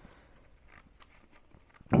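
Quiet rustling of paper pages as a thin instruction booklet is leafed through, with a few faint crisp clicks and flicks.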